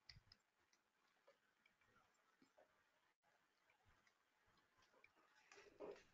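Near silence: faint room tone with a few faint clicks just after the start and again shortly before the end.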